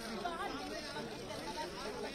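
Overlapping chatter of several people talking at once, with no single clear voice.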